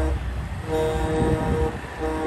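A semi-truck air horn blows for about a second over the low rumble of truck engines.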